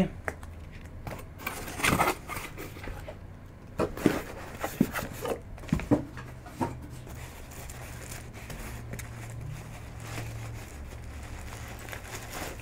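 Scattered bumps and rustles of a cardboard box and a cloth drawstring bag being handled on a table, mostly in the first half, followed by a faint low steady hum.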